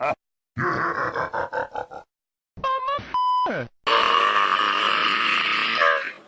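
Edited, distorted voice clips chopped into a rapid stutter, then a short beep-like tone with pitches sliding downward, then a loud, steady, noisy blast of distorted sound.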